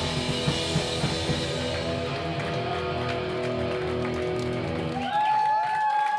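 Live punk-rock band with distorted electric guitar, bass and drum kit playing the end of a song. The drums fall away and the chords are left ringing. Near the end the low end drops out, leaving high steady ringing tones from the guitars.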